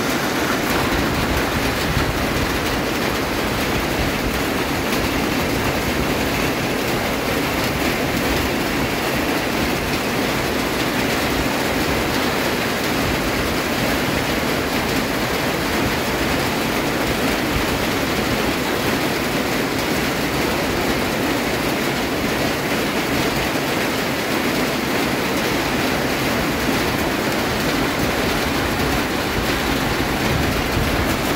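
Heavy monsoon rain pouring down in a steady, even rush that holds at one level throughout.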